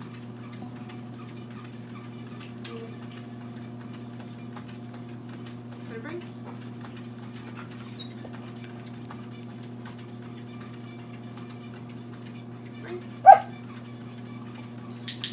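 A dog whimpering softly, then giving one short, loud yip a little before the end, over a steady low hum.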